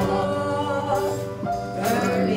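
A man and a woman singing a gospel song together, holding long notes over a steady low accompaniment.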